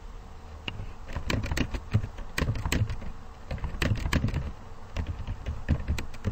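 Typing on a computer keyboard: irregular runs of quick key clicks, starting about a second in.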